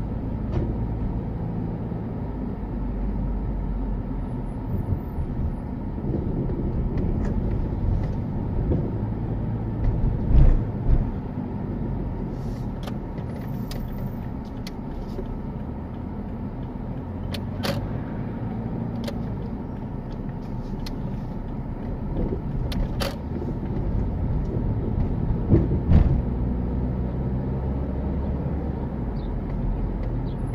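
Car driving slowly, heard from inside the cabin: a steady low engine and tyre rumble, with a few short knocks over the drive.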